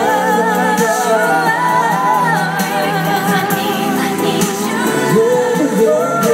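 Live pop duet of a female and a male singer over a backing track, singing the word "long" and then holding long notes with vibrato that slide between pitches.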